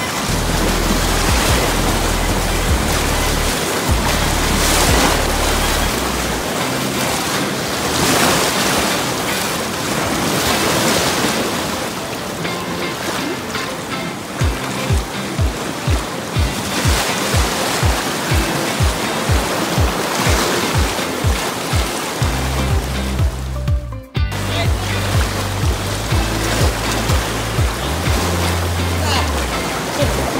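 Rushing whitewater of river rapids under background music with a deep bass line; a steady kick-drum beat of about two beats a second comes in halfway through, and the music drops out for a moment shortly before the end.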